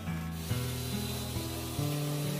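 Electric hand mixer (Electrolux EasyCompact) whirring, its twin beaters churning whipping cream that is stiffening in a plastic bowl, with a steady rushing, scraping noise. Background music with held notes plays under it.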